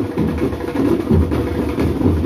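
Marching band drum line playing a steady beat on bass drums and snare drums.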